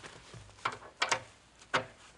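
A few short, sharp clicks and knocks, about four in two seconds, from the hydraulic hose ends and metal fittings of a tractor loader's quick-attach being handled and routed by hand.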